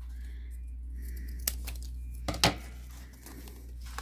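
Paper rustling and crinkling as die-cut paper flowers are handled and pushed into a paper cone, with a few light clicks, the loudest about two and a half seconds in, over a steady low hum.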